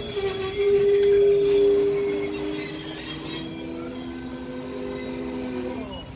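Train wheels squealing on the rails: several steady tones sounding together that step lower in pitch over a few seconds, with a thin high whine above them. The squeal stops near the end.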